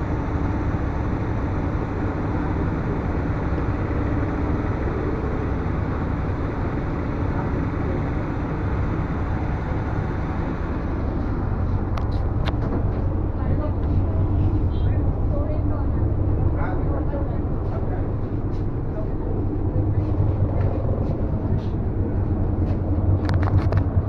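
A river ferry's engine drones steadily on a vehicle crossing, with people's voices in the background.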